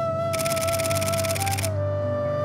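Camera shutter firing in a rapid continuous burst of clicks for about a second and a half, over background flute music.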